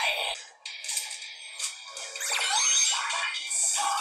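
A TV episode's soundtrack playing thin, with its bass cut away: music with sliding electronic sound effects around the middle.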